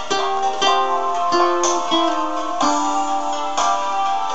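Acoustic guitar played solo, plucking a slow melody of single notes that ring on over held chord tones.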